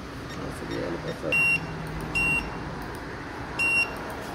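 Handheld card payment terminal (Geidea, mada) beeping three times during a card payment: short high beeps about a second apart, the last as the card is placed on it.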